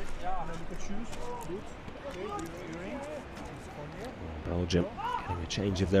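Players' voices calling and shouting across a grass football pitch, heard at a distance, with a few scattered sharp knocks. A louder shout comes about four and a half seconds in.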